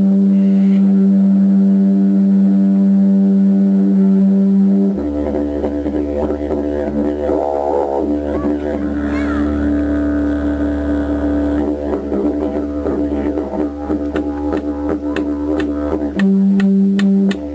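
Didgeridoo drone music: a steady droning tone that changes to a deeper drone about five seconds in, with wavering overtones in the middle. Sharp, rhythmic clicks join in and grow denser over the last few seconds.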